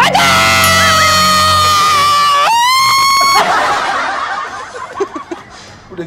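A long, loud, high-pitched held cry that slowly sags in pitch, then jumps to a higher held note about two and a half seconds in and breaks off a second later. It is followed by several people laughing, fading toward the end.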